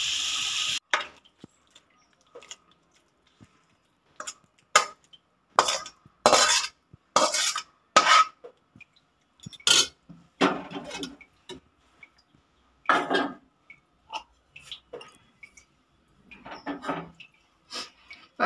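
A steel ladle scraping and clinking against metal pots as prawn masala is spooned from a kadai onto rice in a pressure cooker, in irregular separate strokes. A short hiss cuts off within the first second.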